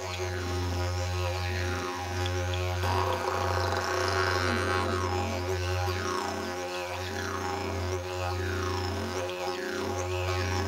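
Instrumental music: a steady low drone pitched on F#, with bright overtones sweeping up and down over it.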